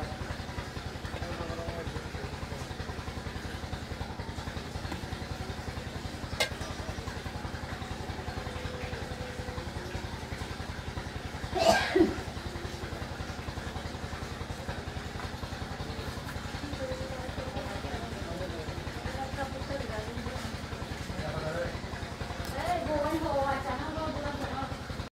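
A small engine running steadily, with a couple of sharp knocks about twelve seconds in and faint voices near the end.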